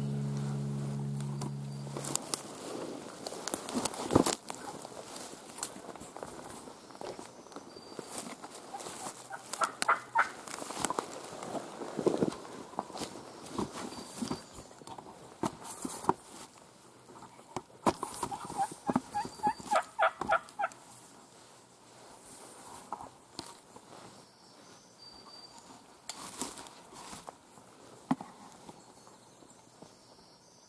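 Wild turkey gobblers gobbling: rapid rattling calls several times, the longest run from about eighteen to twenty seconds in, among crackles of dry leaves. A steady low hum fills the first two seconds.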